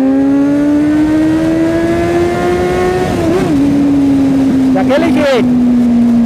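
Kawasaki Z800's inline-four engine under way, its pitch climbing steadily for about three seconds, then dipping a little and easing down as the revs fall.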